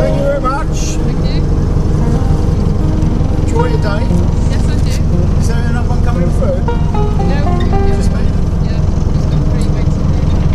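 Narrowboat's diesel engine running steadily as the boat cruises, a continuous low drone.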